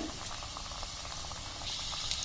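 Breadcrumb-coated vegetable patties deep-frying in medium-hot oil in a steel pan: a steady bubbling sizzle with fine crackles, growing brighter near the end.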